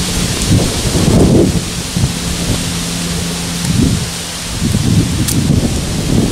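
Wind buffeting the microphone: irregular low rumbling gusts with a hiss above them, with a faint steady low hum underneath for part of the time.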